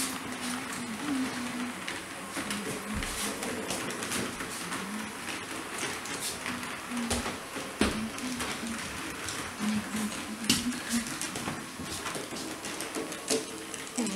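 H0-scale model train running on the track: a steady rolling whir with scattered sharp clicks as the wheels pass rail joints and points. A faint low voice murmurs underneath.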